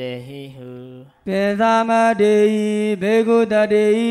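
A man's voice chanting Pali scripture in a slow melodic recitation, holding long notes on a few steady pitches. It breaks off briefly about a second in, then resumes louder and on a higher pitch.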